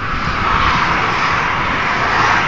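A vehicle passing at speed on the road close by: a loud, even rush of tyre and wind noise that swells about half a second in and holds.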